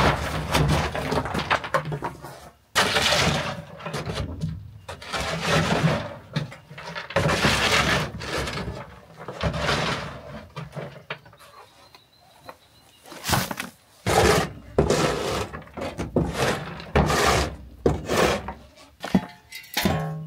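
A plastic shovel scraping across the wooden plank floor of a chicken coop, scooping up dry chicken droppings and old litter in a run of repeated scrapes and knocks.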